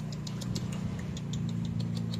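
A steady low machine hum, like an engine idling, with quick irregular clicks over it, several a second.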